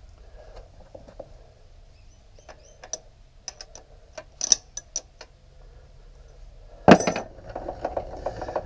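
Light metallic clicks and clinks of a metal lathe being handled by hand while stopped, scattered and irregular, with a louder knock near the end.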